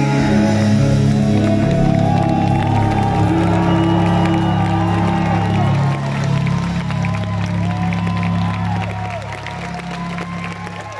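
A live heavy metal band holds a long final chord through the hall's PA, with the crowd cheering and whooping over it. The cheers and whistles grow more prominent in the second half as the band's sound eases slightly.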